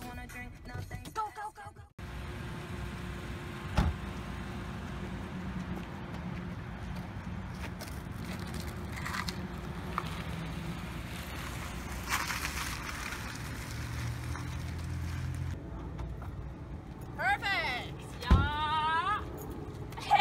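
A car engine running at low speed while it manoeuvres between cones. Near the end come loud, excited shrieks of celebration from young women.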